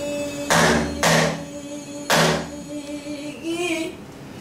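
Pansori singing accompanied on a buk barrel drum: a held sung note ends about half a second in, then the drum is struck three times, sharp hits with a low thud, and a short sung phrase comes near the end.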